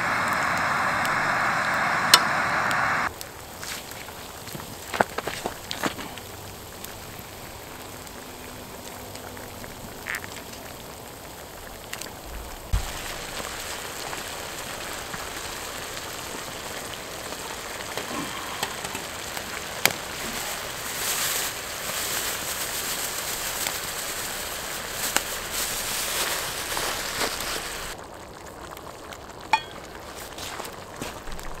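Chicken stew sizzling in a cast-iron griddle pan over a fire. It is loud for the first three seconds as potatoes go in, then drops to a quieter, steady simmer with scattered light clicks.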